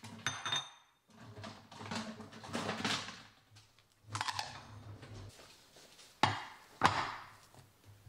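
Glass food-storage dishes and their snap-lock plastic lids being handled and set down on a granite countertop: scattered clinks and knocks with rustling between, the two loudest knocks near the end.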